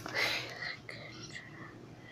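A girl whispering a single word ("good") about half a second long, then only faint background sound.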